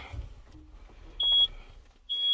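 One short electronic beep from the tractor cab's warning buzzer, a steady high tone lasting about a third of a second, a little past a second in.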